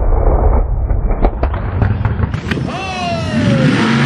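Supercharged engine of a mud drag racing rail backfiring: a series of sharp cracks and pops over a heavy rumble during the first two and a half seconds. Near the end the engine note falls in pitch.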